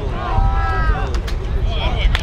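Several voices shouting across the field from players and spectators, over a strong, uneven low rumble, with a few sharp clacks about one and two seconds in.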